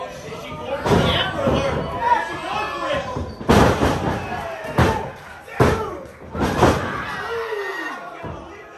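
About five heavy slams of bodies hitting a pro wrestling ring, the loudest about three and a half seconds in, with voices shouting between them.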